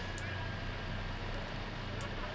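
Steady engine drone of motorcycles riding with a group of racing cyclists, carried on a live broadcast's ambient sound.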